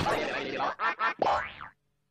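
Cartoon sound effects from the Klasky Csupo logo, warbling and springy. After a dense opening comes two quick bursts and one longer one with a rising sweep, and then the sound cuts off suddenly.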